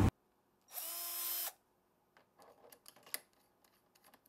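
Metabo cordless drill run in one short burst of under a second: its motor whirs up in pitch, holds, then winds down. A few faint clicks follow.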